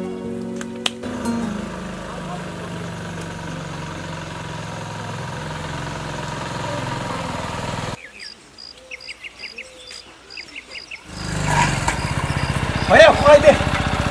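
Motorcycle engine running with a rapid even beat, coming in about three seconds before the end as the bike rides up and stops, with a man's voice over it.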